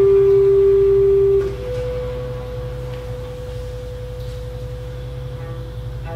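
Chamber music from a clarinet, cello and piano trio: a loud held note, most likely the clarinet, stops about a second and a half in. A soft, almost pure higher tone is then held steadily and quietly to the end.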